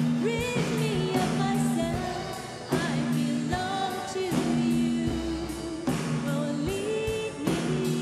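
Live worship song: a woman's lead vocal, with wavering held notes, over sustained keyboard chords and a steady beat.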